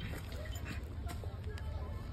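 Handling noise from a phone microphone brushing against a child's hair, over a steady low rumble, with a few faint rustles and clicks.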